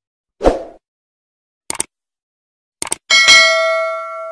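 Subscribe-button animation sound effects: a short thump about half a second in, two quick pairs of clicks, then a bright bell ding about three seconds in that rings on and slowly fades.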